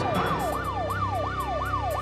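Police siren in a fast yelp, its pitch sweeping up and down about three times a second, over a steady low hum.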